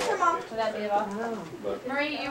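Indistinct voices of several people talking in a room.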